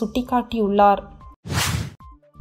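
A brief whoosh transition sound effect, about half a second long, near the end, marking a jump between news stories.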